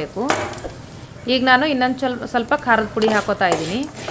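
A wooden spatula stirs a dry-fried peanut and spice mixture in a hot nonstick kadai, with a light sizzle. A woman's voice talks over most of it from about a second in.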